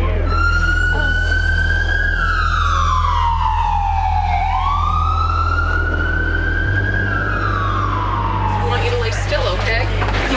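An emergency vehicle siren wailing, its pitch rising and falling slowly in two long sweeps before fading out near the end.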